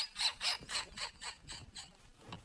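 Quiet, breathy, wheezing laughter: a man's laugh trailing off in short rasping breaths, about four a second, growing fainter.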